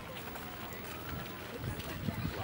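Faint, indistinct voices over quiet outdoor background noise.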